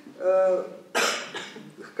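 A single sharp cough about a second in, fading over most of a second, after a short drawn-out vowel from a speaker's pause.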